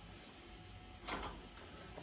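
An aluminium part with a packing piece being seated in a steel machine vise on a drill press: a faint, short metallic scrape about a second in, over a faint steady hum.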